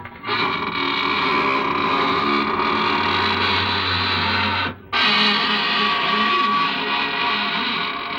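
Organ music from an old radio broadcast: two long sustained chords, the second starting after a brief break about five seconds in.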